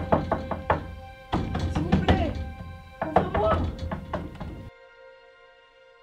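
Hands knocking and pounding on a wooden barn door in a quick run of blows, with a girl's voice crying out among them, over a steady music drone. The pounding and voice cut off abruptly near five seconds in, leaving only the drone.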